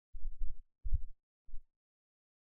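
Computer keyboard typing, heard only as dull low thuds in three short runs, the middle one the loudest.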